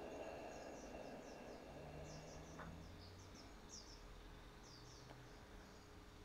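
Near silence: quiet room tone with faint, high bird chirps, a dozen or so short falling notes scattered through the first five seconds.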